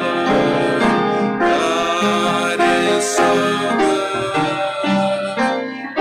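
A church congregation singing a worship song to piano accompaniment, held notes running on without a break.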